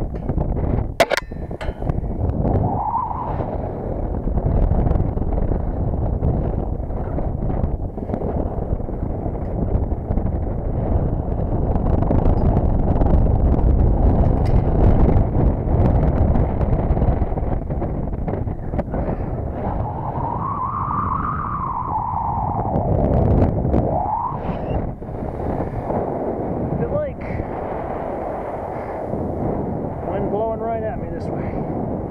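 Wind buffeting the microphone of a head-mounted camera high on a radio tower: a loud, continuous low rumble that swells and eases. A sharp metallic click about a second in.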